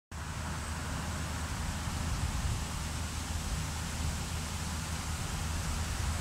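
Steady outdoor background noise with a low rumble and a faint thin high tone above it, unchanging throughout.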